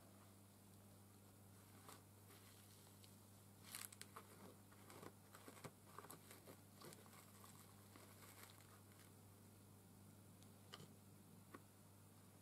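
Near silence, with faint crinkling and small clicks of paper flowers being handled and pressed onto a board, mostly a few seconds in and once more near the end, over a steady low hum.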